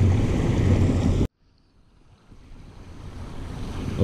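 Steady rushing noise of wind buffeting the microphone over water pouring down a small pond spillway. A little over a second in it cuts off abruptly to near silence, then fades slowly back up.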